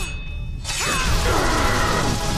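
Animated-film sound effect of a sword striking a stone-like armoured face: a low rumble, then about two-thirds of a second in a sudden harsh crash with grinding, metallic scraping and falling tones that keeps on.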